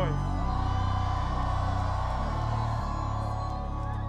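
Instrumental hip-hop beat playing through the stage PA at a live show: long, deep held bass notes that change pitch three times, under sustained higher synth tones, with no rapping.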